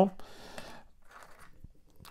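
Faint rustling with a few light clicks from fingers picking through dry pieces of oak bark. The sound is mostly in the first second and then dies down almost to nothing.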